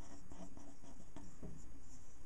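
Pen scratching on paper in short strokes while a drawing is inked.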